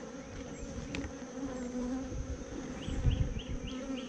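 Honeybees from an open hive box buzzing in a steady hum, with a few soft handling bumps and faint high chirps about three seconds in.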